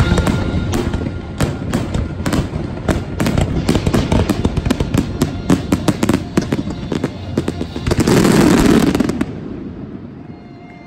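Fireworks finale: a rapid, dense barrage of aerial shell bursts and crackle, peaking in a loud, thick burst of crackling about eight seconds in, then dying away near the end.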